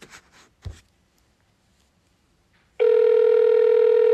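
Steady telephone line tone through a phone's speaker on a call being put through from a supermarket's automated phone menu: one held pitch with overtones, starting near the three-second mark and lasting about two seconds, after a faint knock and a near-silent pause.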